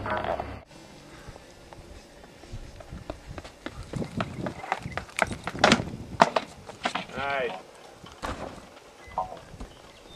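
A pole vaulter's run-up on the runway: footsteps that grow louder and quicker, peaking with the pole plant and take-off about six seconds in. A short vocal cry follows about a second later.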